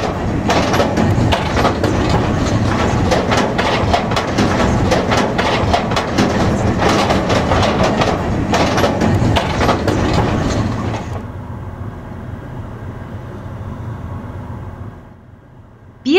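A car's tyres rolling over the steel grating deck and plates of a car-carrier train wagon as it drives off, a loud, dense clatter and rattle. About 11 seconds in the clatter stops and gives way to a quieter, steady rolling noise.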